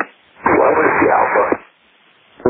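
A burst of radio static about a second long on the air-traffic-control frequency, an even hiss with no clear words in it.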